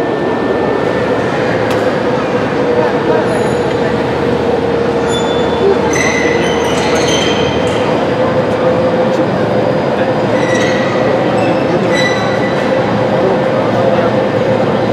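Overhead crane carrying a suspended railway car, a steady hum with a continuous tone, over crowd chatter. A few light metallic clinks ring out about six seconds in and again around ten and twelve seconds.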